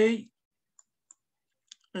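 Three faint computer mouse clicks at uneven spacing, in an otherwise quiet room, just after a spoken word ends.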